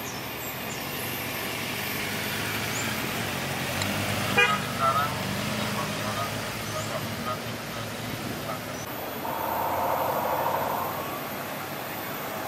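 A motorcade of cars and escort motorcycles driving past, their engines growing louder as they pass, with a horn toot toward the end.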